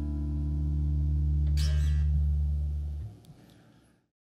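Acoustic guitar's closing chord ringing out and slowly fading at the end of a song, with a short scratchy scrape across the strings about one and a half seconds in. The low notes are cut off suddenly about three seconds in, and the sound dies away to silence.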